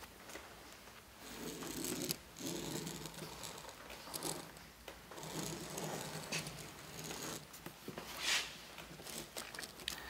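Faint scratching of a pen tracing around a pattern template on thick cowhide, with soft rustles as the template and hide shift under the hands. One brief louder scrape comes about eight seconds in.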